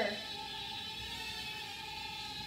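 Holy Stone HS190 mini quadcopter in flight: its small motors and propellers give a steady, even whine made of several fixed tones.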